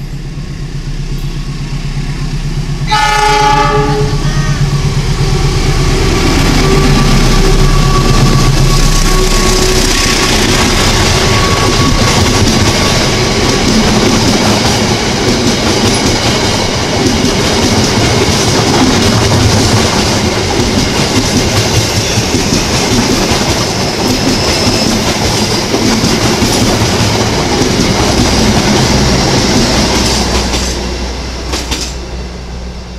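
CC 206 diesel-electric locomotive approaching with its engine rumbling, sounding one horn blast of about a second and a half about three seconds in. It then passes close by hauling a long rake of passenger coaches, with a steady rush of wheel-on-rail noise that fades near the end.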